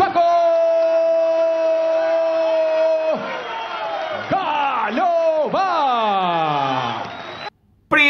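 Ring announcer's drawn-out shout of the boxer's nickname "Paco", held on one steady note for about three seconds, followed by several more shouts that slide down in pitch. The sound cuts off suddenly near the end.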